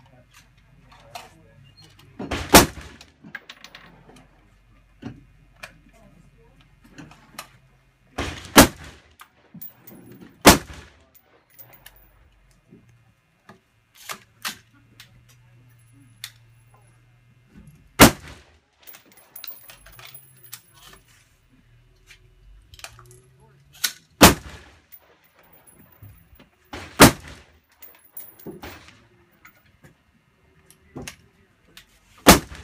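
Rifle fired from a bipod, about six single shots a few seconds apart at an uneven pace, with fainter cracks and clinks in between.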